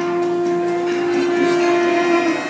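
Tenor saxophone holding one long, steady note.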